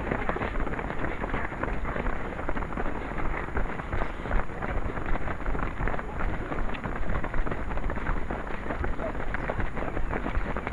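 Footsteps of a pack of runners on a park path, heard close on a headcam microphone with wind rumbling on it and some voices mixed in.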